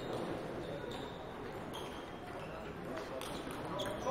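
Table tennis hall between points: a steady murmur of distant voices, with a few light ticks of table tennis balls bouncing.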